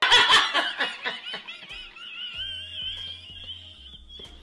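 Two people laughing hard together, loudest in the first second and then trailing off, over background music.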